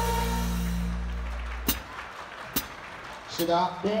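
The final chord of a song with a drum kit rings out and fades away over the first second and a half. Then come two sharp knocks about a second apart, and a man says a short word near the end.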